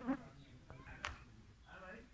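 Insect buzzing, loudest in a brief pass right at the start, with a single sharp click about a second in.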